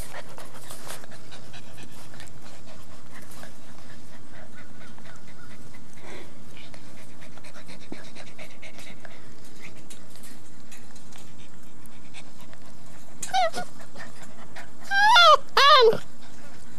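Puppies panting up close to the microphone. About 13 seconds in comes a short high whine, then near the end a louder quick run of high whines that swoop up and down.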